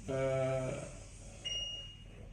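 A man's voice holding a hesitant "uhh" for about half a second at one steady pitch. Quiet room tone follows, with a faint, thin high tone near the end.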